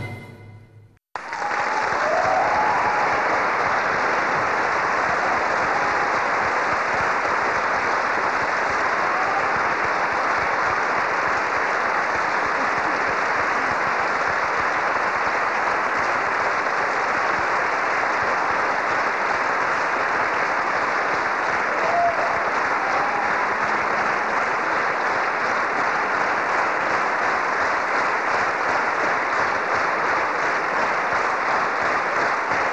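A concert-hall audience's sustained applause, steady throughout, starting about a second in just after the last sounds of the ensemble die away. A few short calls rise above the clapping near the start and again later.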